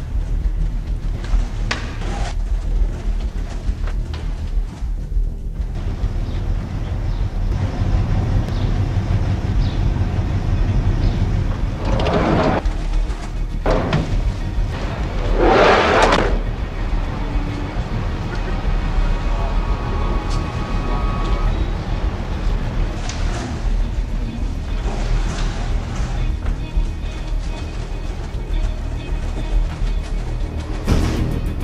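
Film soundtrack music running under the scene, with two short, louder noisy swells near the middle.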